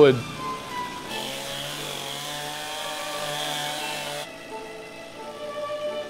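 Stihl chainsaw running at high speed for about three seconds, then cutting off abruptly, while carving the end grain of pine logs to shape. Soft sustained music plays beneath.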